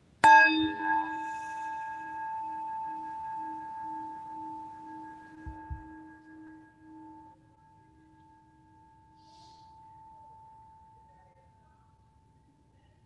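A singing bowl struck once, then ringing in several clear tones that slowly fade over about ten seconds, its low tone wavering in a slow pulse. It is rung to open a time of silent meditation.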